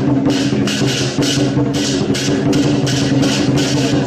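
Chinese dragon dance percussion: clashing cymbals in a fast, steady rhythm of about three to four strikes a second over a sustained low ringing tone.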